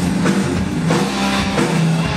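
Live rock band playing a heavy metal song on electric guitars, bass and drum kit, with a steady drum beat.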